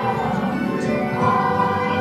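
Choir singing held, gliding notes with orchestral accompaniment.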